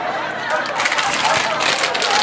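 Crinkling and rustling of a plastic snack-cake wrapper handled in the hands, a busy crackle that fills most of the two seconds.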